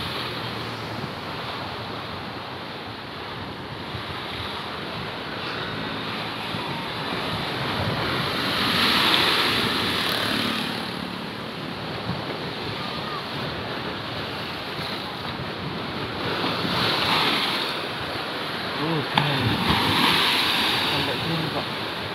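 Rough high-tide surf breaking against a low seawall and washing up the beach, a continuous rushing that swells louder about nine seconds in and again twice near the end, with some wind on the microphone.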